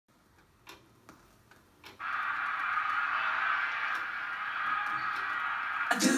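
A few faint clicks, then a steady rushing noise that comes in suddenly about two seconds in and holds evenly.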